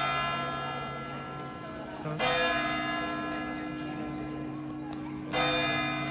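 Clock-tower bell of the Hooghly Imambara striking twelve o'clock. A stroke just before rings on at the start, then come two more strokes about three seconds apart, one about two seconds in and one near the end, each with a long ringing tail.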